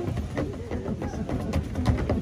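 Electronic floor piano sounding a few short notes as children step on its light-up keys, with scattered thumps of footsteps on the keys.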